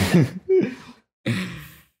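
Men laughing: a loud breathy burst of laughter, a short voiced laugh, then a long breathy exhale about a second in that fades away.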